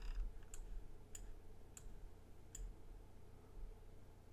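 Four faint computer mouse clicks, spaced about half a second to a second apart, over a low steady hum.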